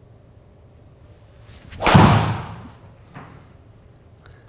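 A Titleist TSR3 titanium driver striking a golf ball in an indoor hitting bay: one sharp crack just under halfway through, with a tail that dies away over most of a second, and a faint knock about a second later.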